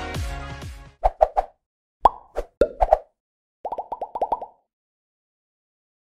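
Electronic music fades out, then comes a string of short popping sound effects, each a quick pop with a brief pitched ring, in three quick clusters.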